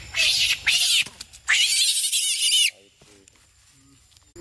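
Pig-tailed macaque screaming: two short shrill screams, then a longer one of about a second, cutting off a little under three seconds in.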